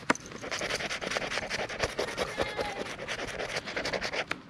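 Rapid, repeated scraping of a paper lottery scratch ticket with a small red scraper, rubbing off the scratch-off coating in many quick short strokes.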